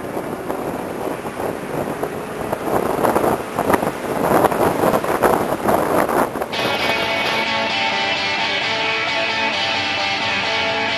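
Wind rushing and buffeting over the microphone of a camera mounted on a tandem hang glider in flight, growing louder and gustier partway through. About six and a half seconds in, the wind sound cuts off and strummed guitar music takes over.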